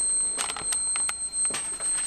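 Steady high-pitched squeal of the resonant transformer coils, driven at about 4.2 kHz by a TL494 oscillator, with a few light clicks in the first half.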